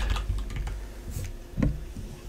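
Computer keyboard keys clicking: a few scattered keystrokes, one a little louder about one and a half seconds in.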